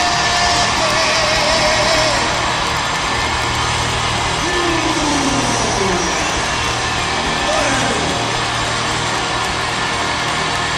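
Live arena rock concert heard from within the audience: a dense wash of crowd noise over a sustained low band sound, with a few voices calling out, one in a falling glide about halfway through.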